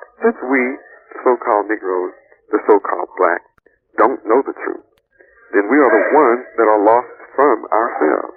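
Speech: a person talking steadily through a thin, narrow-band, telephone-like recording.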